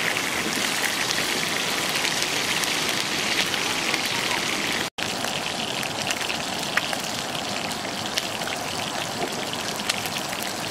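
Geckos and meat sizzling in hot fat on a flat slab over a fire: a steady dense crackle with scattered small pops. The sound breaks off for an instant about halfway.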